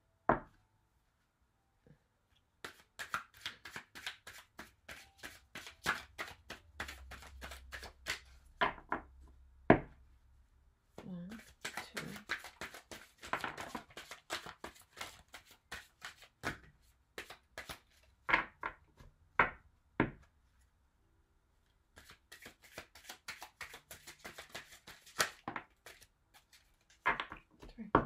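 A deck of tarot cards being shuffled by hand, in three long runs of rapid papery flicks with several single sharp card snaps between them.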